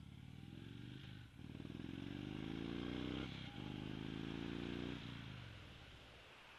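A 2014 Indian Chief Vintage's Thunder Stroke 111 V-twin accelerates away from a stop. Its pitch climbs, breaks briefly twice as the rider shifts up, climbs again, then eases off near the end.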